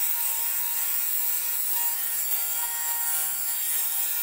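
Torras rechargeable electric lint remover running steadily, its small motor humming as it shaves the bobbles off a wool coat.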